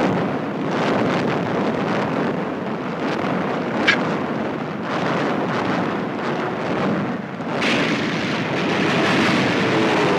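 Continuous dense roar of a warship's anti-aircraft guns firing against attacking torpedo planes, with one sharp crack about four seconds in.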